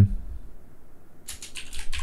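Typing on a computer keyboard: after a short pause, a quick run of keystrokes begins a little over a second in.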